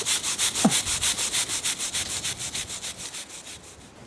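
A climbing brush scrubbed quickly back and forth on the rock holds, about eight strokes a second, fading out near the end: the climber cleaning chalk and grit off the holds.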